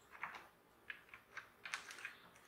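A red deer stag working its head and antlers through grass and low branches: a few short, irregular crackles and snaps of vegetation, about six in two seconds.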